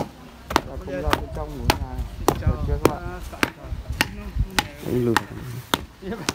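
Earth being tamped with a rammer inside the formwork of a rammed-earth wall: sharp, evenly spaced blows, a little under two a second.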